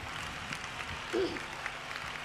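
Audience applause, an even patter of many hands clapping, with a short voice sound about a second in.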